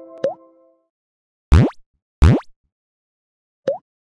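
Cartoon-style pop sound effects: a small rising blip, then two loud, very quick pops about 0.7 s apart, then another small rising blip near the end. The last note of a logo chime is fading out at the very start.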